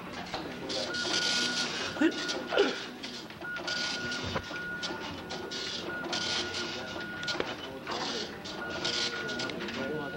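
Dot-matrix printers printing: a string of rasping print-head passes, each under a second, with a thin steady high tone coming and going under low voices.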